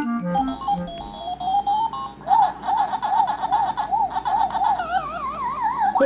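Electronic sound effects of a Pac-Man arcade game: a short run of beeps, a rising tone, then a fast, steady warbling tone. Near the end comes a falling warble, the sound of Pac-Man losing a life.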